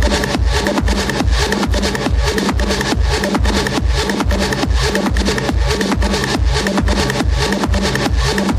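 Techno DJ mix: a steady four-on-the-floor kick drum about two beats a second, with hi-hats ticking between the kicks and a looping synth line.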